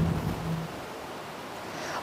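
Steady rushing hiss of outdoor background noise on a live field microphone, with a low steady hum that cuts off under a second in.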